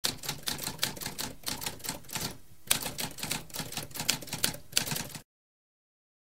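Typewriter sound effect: rapid, uneven keystrokes with a brief pause about halfway through, cutting off sharply about five seconds in.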